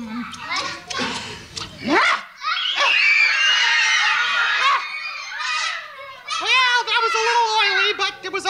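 A room of young children calling out and shrieking together, many high voices overlapping in excited bursts. A quick upward-sliding sound comes just before two seconds in.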